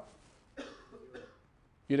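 A student's faint, off-microphone voice answering from the lecture-hall audience, brief and much quieter than the lecturer's miked speech.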